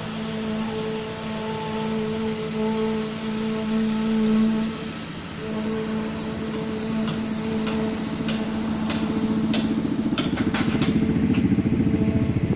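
Construction-site machinery engine running steadily, dropping out briefly about five seconds in. Sharp metallic clanks join it over the last few seconds.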